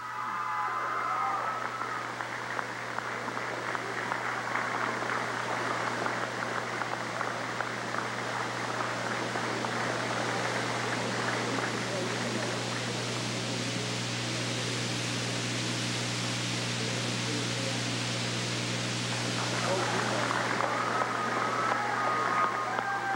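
Crowd applauding steadily in a gymnasium, a dense patter of many hands clapping that swells slightly near the end, over a steady low electrical hum.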